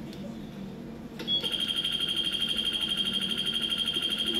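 Digital classroom timer's alarm going off, played back over the room's speakers: a high, rapidly pulsing electronic beep that starts a little over a second in and keeps sounding.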